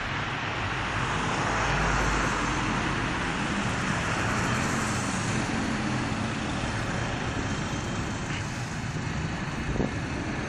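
Road traffic noise on a town street, with a vehicle passing and swelling loudest about two seconds in, then a steady rush of tyres and engines.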